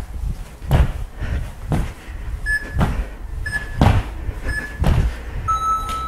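Thumps of feet landing on the floor, about one a second, during alternating (jumping) lunges. Over them an interval timer gives three short beeps a second apart and then one longer beep, counting down to the end of the work interval.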